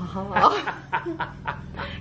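A woman and a man laughing together.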